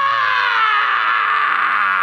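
A man's long, loud scream, held on one note that slowly drops in pitch, cutting off near the end.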